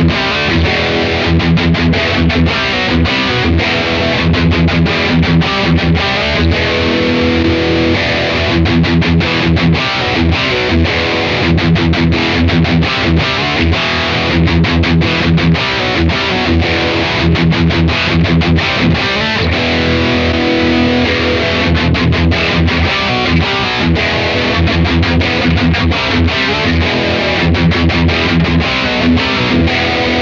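Distorted electric guitar playing fast picked metal rhythm riffs through a Blackstar Amped 2 set for a high-gain tone. An overdrive pushes the amp harder, tightening the sound. A very subtle chorus adds a slightly detuned, doubled, thickened feel.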